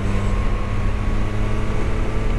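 Motorcycle engine running at a steady cruise, a low drone holding one pitch.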